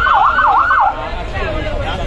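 A vehicle siren on a fast yelp, its pitch sweeping up and down about four times a second, cutting off about a second in, leaving street noise.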